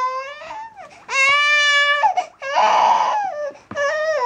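Five-month-old baby fussing and crying while lying on her tummy, in a string of wailing cries of about a second each, one rougher and raspier in the middle and another starting near the end.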